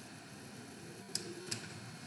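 Two faint clicks of computer keyboard keys about a third of a second apart, over a low room hiss.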